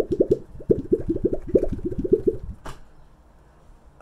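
Mionix Propus 380 mouse mat being bent by hand, giving a quick run of bubbly popping sounds for about two and a half seconds, then a single click.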